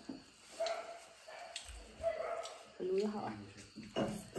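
A dog whining and yelping in several short, high calls, with faint clicks of eating between them.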